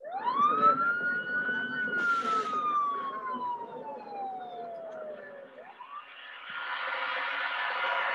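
A police siren wailing over street noise: one quick rise and a long, slow fall, then the start of a second rise. A denser, hissing noise swells near the end. It is heard as the opening of a music video played through a video call's screen share.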